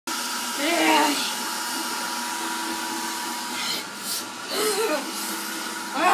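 Handheld hair dryer running steadily: a continuous rushing blow with a faint steady whine. A child's voice breaks in briefly twice, about a second in and near the end.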